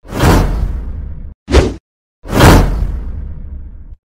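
Three whoosh sound effects from an animated subscribe end screen. The first is long and fades over about a second, the second is short, and the third is long and fades away.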